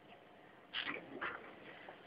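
Two short voice sounds, such as a brief murmur or exclamation, about a second in, over faint room noise.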